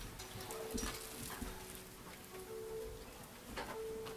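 Congregation getting up from padded church seats: clothing rustling and a few light knocks and clicks, under quiet held music notes that come and go.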